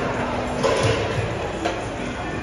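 Noisy ambience of a large, echoing indoor hall, with a couple of short knocks, one a little after the start and one near the end.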